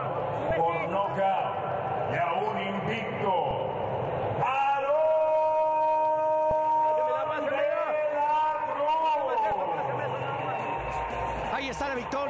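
A ring announcer's voice announcing the fight result. About four and a half seconds in he draws one word out into a long held call that lasts some five seconds, then goes back to speaking.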